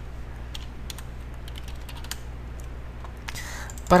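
Typing on a computer keyboard: scattered single keystrokes over a steady low hum.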